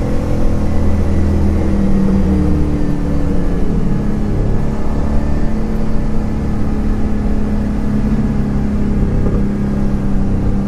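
A Blueprint 350 small-block Chevy V8 crate engine, breathing through long-tube headers and a 2.5-inch X-pipe exhaust, running at a steady cruise with road noise under it. The engine note wavers a little in the first few seconds and then holds even.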